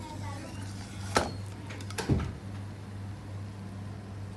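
Two sharp knocks, about a second apart, as fried chicken legs are set down from a slotted spatula onto a ceramic plate, over a steady low hum.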